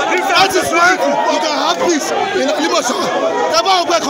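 A man speaking loudly and close to the microphone over the chatter of a crowd of protesters.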